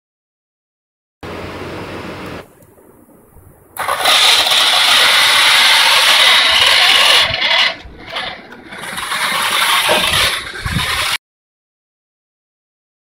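Small DC gear motors of a four-wheeled robot car whirring in stop-and-go runs: a softer run about a second in, a pause, a loud run from about four seconds, a drop near eight seconds, then another loud run that cuts off abruptly near the end.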